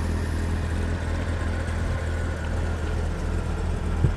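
Steady low hum of an idling engine, even throughout, with faint outdoor background noise.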